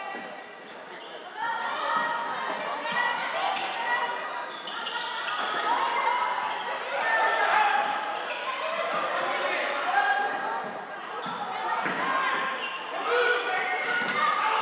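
Floorball game sound echoing in a sports hall: players' and spectators' voices calling out, picking up about a second in, over scattered sharp clicks of sticks on the plastic ball and the floor.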